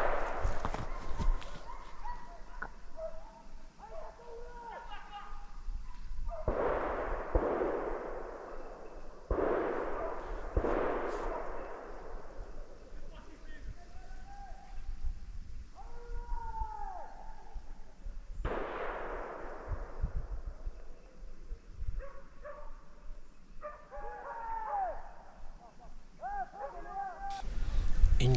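About four distant rifle shots from other hunters on the line, each rolling away through the woods over a second or two. In between come short, pitched calls from the drive, typical of hounds giving tongue.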